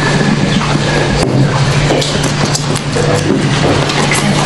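Busy room noise in a large hall: a steady low hum under a constant haze, with light clicks and paper rustling as briefcases are opened and folders handled.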